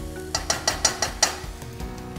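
Spatula scraping and clacking against a stainless-steel wok while stirring onions and tomatoes, about six quick strokes in the first second and a bit, over soft background music.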